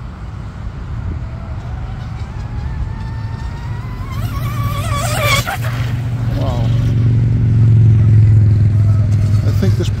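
Electric RC tunnel-hull racing boat on a speed sprint: its motor whine climbs steadily in pitch as it speeds up and closes in, with a brief loud rush about five seconds in as it passes close. A steady low rumble takes over in the second half.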